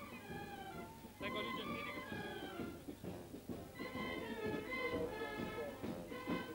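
Carnival marching band with clarinets playing a tune, held notes moving from one to the next.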